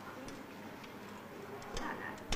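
A few faint clicks from a payphone as a number is dialed, over quiet background murmur.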